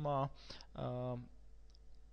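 A voice trailing off in drawn-out hesitation sounds, with a short click about half a second in.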